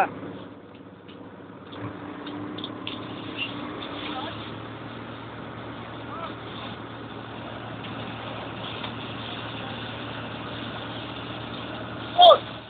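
Fire engine's pump engine running steadily with a low hum, under the steady hiss of a hose jet spraying water.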